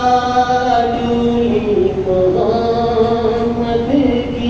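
A male voice chanting a Shia mourning elegy (soz khwani) in long, held notes that step from one pitch to the next every second or so.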